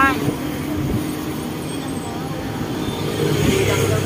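Road traffic: a steady low rumble of passing vehicles.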